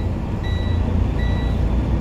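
Short electronic warning beeps repeating about every three-quarters of a second, over the low, steady rumble of the truck's running engine.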